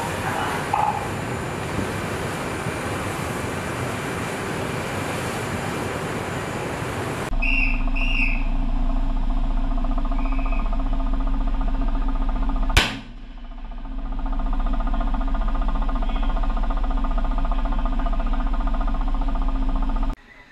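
Wind and sea noise rushing, then a steady low ship-machinery hum, broken about 13 seconds in by a single sharp gunshot from a line-throwing rifle sending the shot line across to the supply ship.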